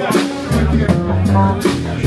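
A live blues band playing, with drum kit, cymbal strokes, bass and guitar.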